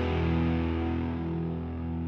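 A rock band's last chord ringing out: distorted electric guitar and bass held on one chord, slowly fading.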